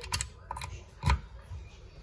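A few small plastic clicks and knocks as a USB cable plug is pushed into the USB port of a battery-powered LED work light, the loudest about a second in.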